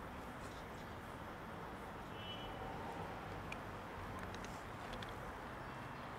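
Steady low outdoor background rumble, with a few faint clicks from cats chewing wet food.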